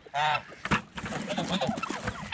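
Domestic geese honking: one loud, short honk just after the start, then quieter calls from the flock.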